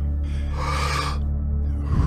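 A person taking deep, audible breaths in the Wim Hof method's paced rhythm: one full breath about half a second in, the next beginning near the end, over background music with a steady low drone.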